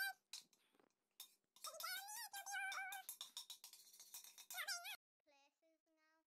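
High-pitched, squeaky voice sounds without clear words, coming in a few bursts, with fainter short tones near the end.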